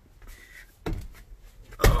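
Two hard knocks about a second apart, the second louder, from knocking against the truck's plastic dash panels while working under the dash.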